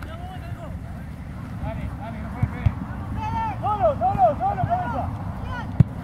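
Shouts of players on a football pitch, clustered about halfway through, over a steady low wind rumble on the microphone. A few sharp knocks stand out, the loudest shortly before the end.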